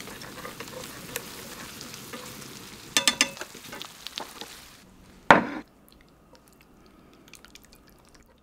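Cream sauce simmering in a frying pan while pasta is stirred with chopsticks, the chopsticks clacking against the pan in a quick cluster about three seconds in. The sizzling cuts off suddenly about five seconds in as the pan comes off the heat, followed by one loud clank, then only a few faint clicks.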